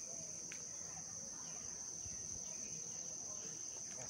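Insect chorus in green forest: one steady, high-pitched drone that runs unbroken, over faint background hiss.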